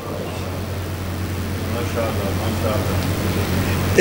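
A pause in amplified speech: a steady low hum runs under faint voices murmuring in the hall, with a man's voice resuming loudly at the very end.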